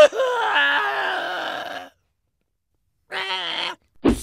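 A pitched-up cartoon character voice wailing in mock grief: one long moan falling in pitch for about two seconds, then after a pause a short sob.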